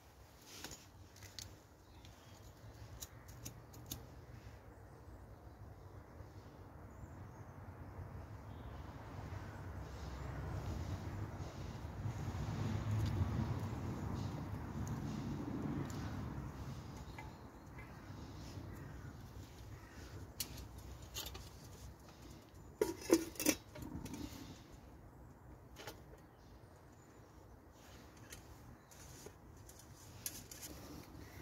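Handling sounds from lighting a small fire in a Kelly Kettle's base pan: scattered light clicks and knocks, a low rushing swell in the middle, and a short burst of sharp metallic clinks a little past two-thirds through.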